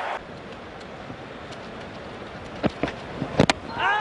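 Steady open-air cricket ground ambience from the broadcast, then a cluster of sharp knocks between about two and a half and three and a half seconds in as the ball is bowled and strikes the batsman's pads and the stumps. Crowd noise rises at the very end as the wicket falls.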